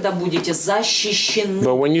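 Speech only: a voice talking steadily throughout, with no other sound standing out.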